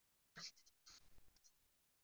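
Faint scratching and tapping of a stylus writing on a tablet screen, in two short bursts: one about half a second in and a longer one around a second in.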